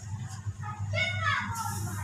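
A high-pitched voice in the background calling out once, its pitch falling, over a steady low electrical hum.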